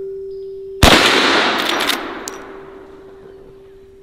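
A single .44 Magnum shot from a Marlin 1894 lever-action rifle, followed by a long echo that fades over about two seconds. A few sharp clicks come about a second after the shot.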